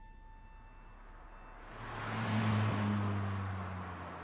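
A car passing by: a rush of engine and tyre noise with a low engine hum that swells through the middle and fades away toward the end.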